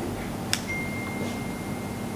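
A single click about half a second in, then a thin, steady high-pitched tone that holds on over low room hum.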